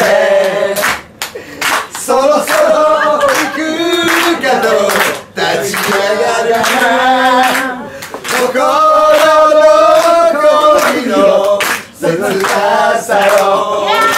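Several voices singing together a cappella, with no instruments, and hands clapping along in a small room.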